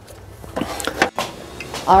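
A few light clicks and knocks of parts being handled in a truck's engine bay, about half a second to a second in.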